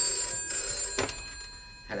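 Telephone bell ringing in two short bursts, then stopping about a second in as the phone is answered.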